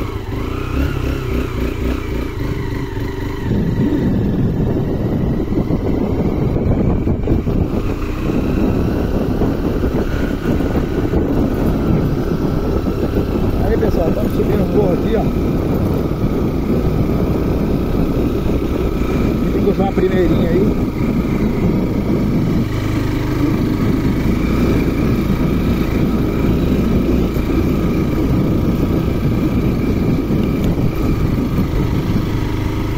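Honda Bros 150's single-cylinder four-stroke engine running at a steady pace while the motorcycle is ridden, heard from the saddle.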